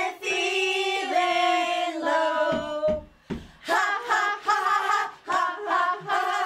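A small group of women singing together: a long held note for about the first three seconds, a brief break, then quicker sung phrases.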